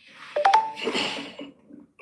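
A short electronic beep, a steady tone lasting about a quarter second, set off by two sharp clicks about half a second in, over a soft hiss.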